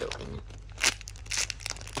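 Clear plastic packaging bags crinkling and rustling as a hand sorts through bagged macaron squishy toys, in a few short bursts with the sharpest a little under a second in.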